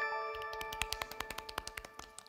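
Game-show 'correct answer' sound effect: a quick rising run of bright chime tones that rings on and slowly fades. Under it runs a rapid series of ticks as the team's score counts up.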